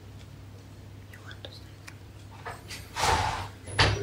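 A low steady room hum, then a man coughs about three seconds in, with a second short burst just before the end.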